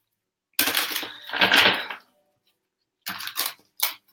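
Tarot cards being shuffled by hand: a papery shuffling stretch of about a second, then a pause, then a few quick sharp card snaps near the end.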